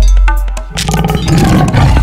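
Intro music sting for an animated title card, opening with a sudden heavy bass hit, with a growling roar effect mixed in through the middle.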